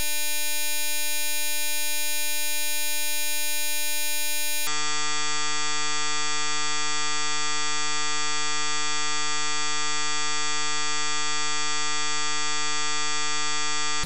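A steady, harsh electronic buzzing tone with many overtones, held at one level. About a third of the way through it switches abruptly to a lower pitch, which holds without change until it cuts off.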